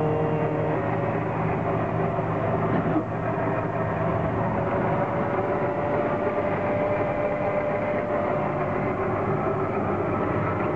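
Small amusement-park track-ride car running along its guide rail: a steady mechanical hum and rumble, with a faint held whine.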